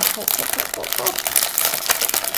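Plastic film wrapper of a cookie package being peeled open, with dense, irregular crinkling and crackling.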